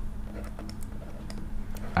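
Light, irregular clicks of a stylus tapping and stroking on a pen tablet while writing, over a steady low electrical hum.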